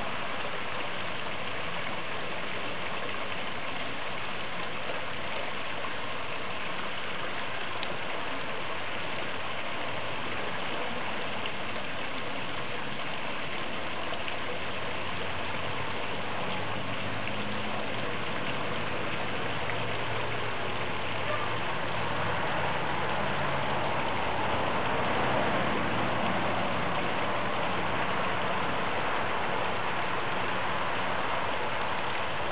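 Garden pond water feature running: a steady rush of falling water, with a low rumble growing in over the second half.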